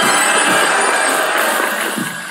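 Live-streaming app's gift-milestone alert sound: a loud, glittering jingle that fades near the end. It signals that a new gift stage has been reached.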